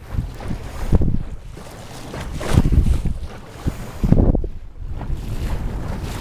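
Wind buffeting the microphone in gusts, swelling several times, with water rushing along the hull of a small sailboat under sail.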